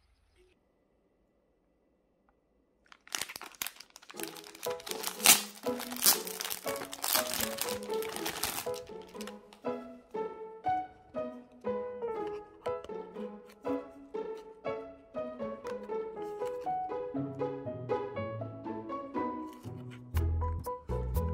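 Near silence for about three seconds, then a dense crackle of crinkling for several seconds as background music begins. The music carries on as a light melody of short notes.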